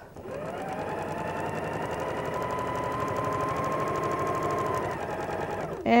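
Electric sewing machine stitching a seam through two layers of cotton quilting fabric: it starts up, runs steadily for about five seconds with a rapid needle clatter over a motor whine, then slows and stops near the end.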